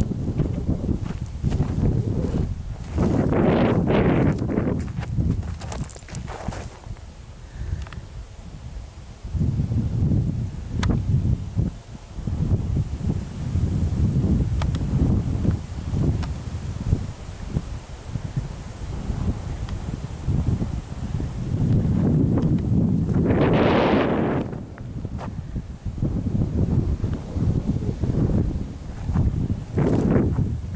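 Wind buffeting the microphone in gusts, a low rushing noise that swells and fades, strongest a few seconds in and again about three-quarters of the way through.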